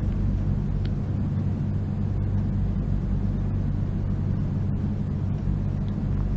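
A steady low hum with a faint hiss beneath it, unchanging throughout.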